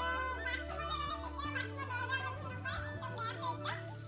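Background music: a song with high-pitched vocals gliding over sustained bass notes.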